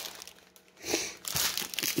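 Small plastic bags of diamond-painting drills crinkling as they are handled, with a short rustle about a second in.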